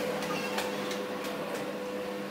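Background of a room's sound system during a pause in speech: a steady low electrical hum with faint, irregular ticks.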